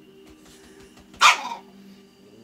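A small dog barks once, sharply, a little past the middle, over a faint steady background of TV sound.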